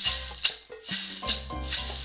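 A Colombian maraca, a dried totumo gourd filled with small hard black totumo seeds, shaken in a steady rhythm of about five sharp rattling shakes.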